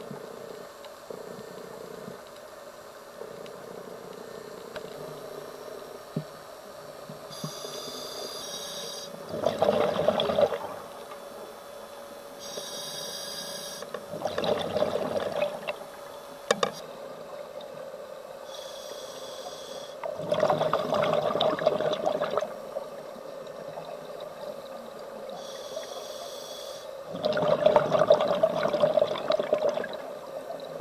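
Scuba diver breathing through a regulator underwater: four breaths about six seconds apart. Each is a short hissing inhale through the demand valve followed by a longer, louder burst of exhaled bubbles, over a steady faint hum.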